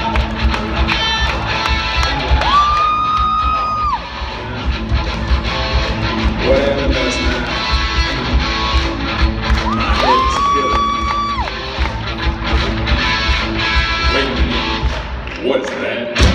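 A small rock band playing live: electric guitars over a drum kit keeping a steady beat. Two long held high notes stand out, one about three seconds in and another about ten seconds in.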